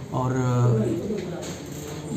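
A man's voice holding a drawn-out hesitation, "aur…", for about a second, then a short lull.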